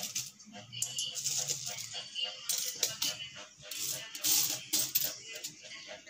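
Loose metal coins clinking and clattering against each other as a hand rakes and sorts through a heap of them, in irregular clinks with a few louder clatters.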